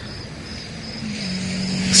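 A steady low hum over a soft hiss, slowly getting louder, with a low tone settling in about a second in. It is a background drone under a pause in the spoken drama.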